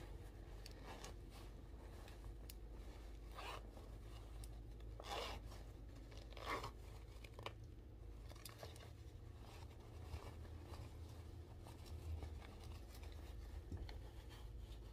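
Faint rustling and scraping of a fabric cap and its attached synthetic hair being handled and pulled on, in a few brief bursts, over a steady low room hum.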